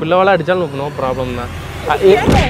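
Voices talking, with a low steady rumble underneath from about halfway in.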